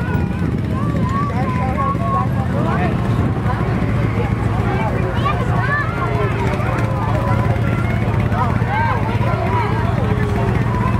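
Engines of slow-moving parade vehicles running steadily, a low drone, under constant crowd chatter and children's voices.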